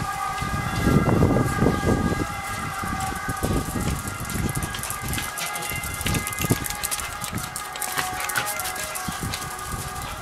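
Footsteps of sandals and small dogs' paws and claws tapping on a tiled floor as a woman walks two Bolognese dogs, many quick clicks with heavier thuds in the first two seconds. Several steady high tones hold behind them.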